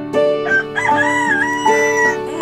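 A rooster crowing once, a long crow that starts about half a second in, over light plucked-string music.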